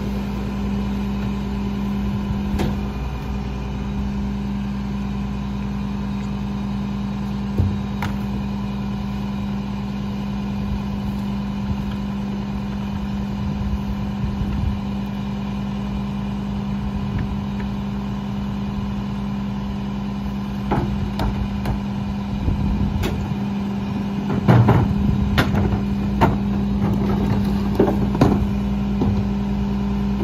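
Rear-loader garbage truck idling steadily with a constant hum. Yard-waste carts are tipped into the hopper, with a few knocks early and a run of loud knocks and thumps over the last third as carts bang against the hopper and waste drops in.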